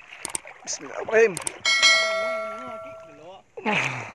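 A short click, then a bright bell ding about a second and a half in that rings on and fades over about a second and a half: a subscribe-button notification sound effect. It plays over river water and a wavering voice.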